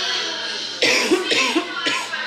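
A woman coughing three times in quick succession, a dry cough from a throat dried out and sore from losing her voice.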